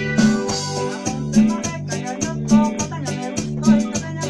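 Electronic keyboard playing kachaka, Paraguayan cumbia-style dance music: a repeating bass line with a strong accent about once a second, under quick, steady percussion ticks.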